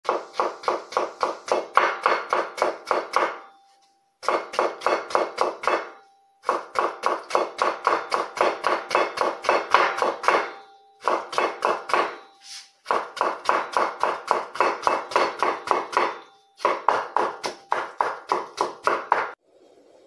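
Chinese cleaver cutting potatoes into thin shreds on a wooden chopping board: quick, even knocks of the blade on the board, about four to five a second, in runs of a few seconds broken by short pauses.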